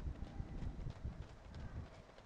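Footfalls of a pack of marathon runners on an asphalt road: many quick, overlapping steps, heard faintly.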